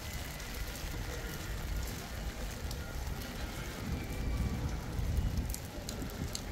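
Rain falling on wet paving stones, a steady wash of noise with scattered light ticks of drops, over a low rumble.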